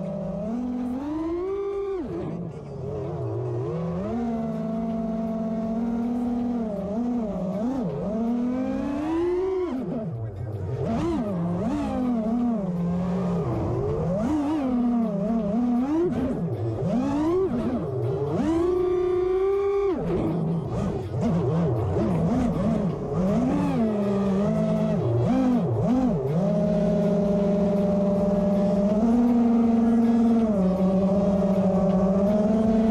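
Racing quadcopter's brushless motors and propellers whining as heard from its onboard camera, the pitch rising and falling constantly with the throttle and dropping suddenly twice.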